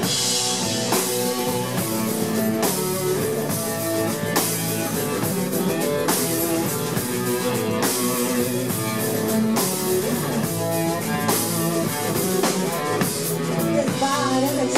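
Live rock band playing an instrumental passage with no singing: strummed acoustic guitar, electric guitar and a drum kit with steady beats and cymbal hits.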